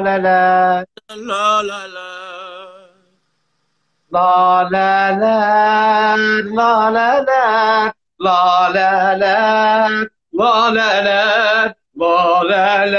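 A man singing long, wordless held notes with a wavering, chant-like melody in several phrases, broken by short breaths. A quieter, higher voice comes in briefly about a second in, followed by about a second of silence before the singing resumes.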